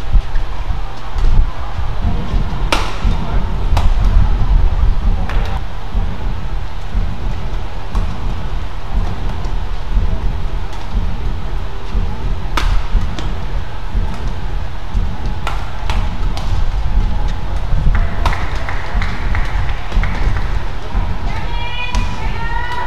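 Badminton rally: sharp racket strikes on the shuttlecock, a few seconds apart, over a steady low rumble of hall noise.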